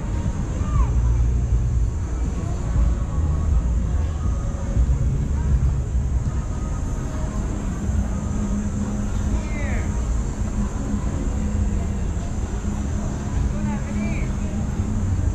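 Outdoor street-market ambience: a continuous low traffic rumble under indistinct voices of people nearby. A low steady hum comes in a little past the middle.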